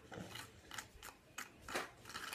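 A plastic packet from a Popin' Cookin' candy kit being handled at the table, giving about six short, faint crinkles and clicks.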